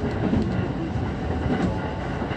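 Commuter train running, heard from inside the carriage: a steady low rumble of the wheels on the track, with a few faint clicks.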